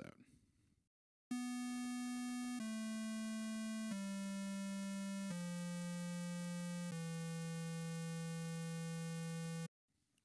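ReaSynth software synthesizer playing a square-wave tone: five notes stepping down one at a time, about a second and a half each, the last held about three seconds before cutting off sharply.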